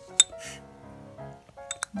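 Ceramic mugs clinking: one sharp ringing clink just after the start and a couple of quicker clicks near the end, over soft background music.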